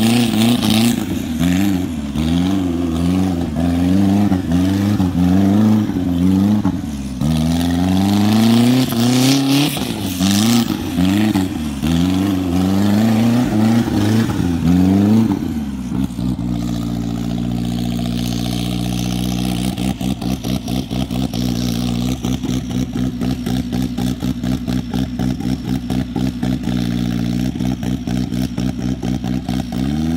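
Off-road buggy engine revving up and down again and again for about fifteen seconds as the buggy circles on dirt. It then drops to a steady lower running note with a fast, even pulse.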